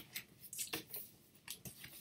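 Handling of a vinyl LP in its paper inner sleeve and cardboard gatefold jacket: a few brief rustles and light taps scattered through, as the record is put away.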